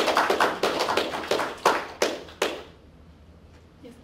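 Audience applauding, a burst of claps that dies away about two and a half seconds in.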